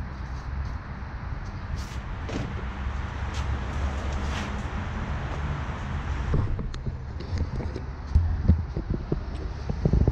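Audi A4 B7 plastic front bumper cover scraping and rustling as it is turned around on a folding table, then a few short knocks as it is set down and handled. A steady low rumble sits underneath.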